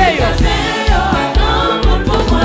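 Live gospel worship music: a woman's lead voice with backing singers joining in, over a band with a steady bass beat.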